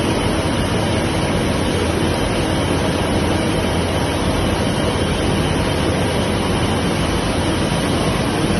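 Steady factory-floor noise from running machinery: a loud, even din with no breaks.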